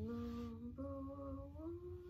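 A woman humming a slow melody with her lips closed, in three held notes, each a little higher than the last.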